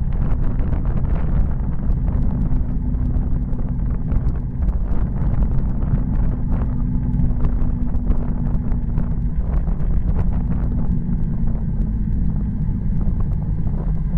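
Wind rushing over a bike-mounted camera's microphone on a fast road-bike descent, with heavy road rumble, a steady low hum and many small knocks from the road surface.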